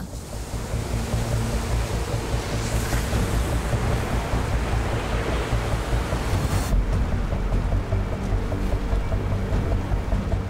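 Snow slab avalanche sliding down the slope: a dense, steady rushing noise with a deep rumble, over a music score with low held tones. About seven seconds in, the higher hiss drops away and the low rumble goes on.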